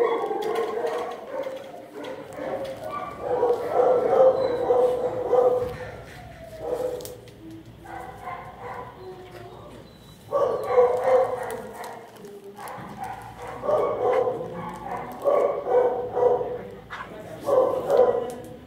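Dogs barking in repeated bouts of a few seconds each, with short pauses between them.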